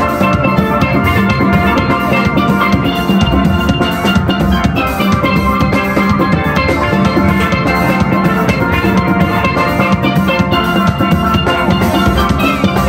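A steel band playing: many steel pans struck with sticks in ringing, bright pitched notes, layered over low bass pans and a steady drum beat, without a break.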